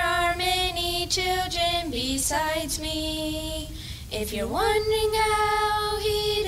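A small group of children and women singing together into one microphone, holding long notes, with a rising slide into a note about four seconds in.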